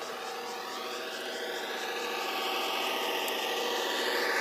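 Garden-scale model diesel locomotive running on outdoor track, its electric motor and gears giving a steady whine with a gently shifting pitch, growing a little louder as it approaches.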